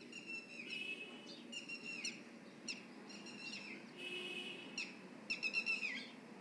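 A bird calling over and over in short, high, chirping phrases that drop in pitch at their ends, over a faint low background noise.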